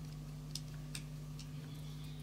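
Light metallic clicks and ticks of a small screwdriver and small metal parts as a model aircraft engine's cylinder head is screwed down and its back plate handled, a few scattered clicks with the sharpest about half a second and one second in, over a steady low hum.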